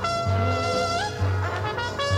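Solo trumpet with concert band accompaniment. The trumpet holds one long note that lifts slightly about a second in, then moves on to quicker notes, over a low note from the band repeated about once a second.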